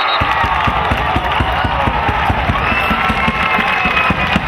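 Spectators cheering and shouting for a lacrosse goal, with a run of dull thumps close to the microphone.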